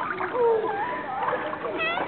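Water splashing in a swimming pool as a toddler is moved through it, with high children's voices and a short high-pitched squeal near the end.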